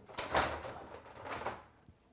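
An aquarium canopy panel being slid and lifted off its frame: a few scraping, rustling handling noises, loudest about half a second in.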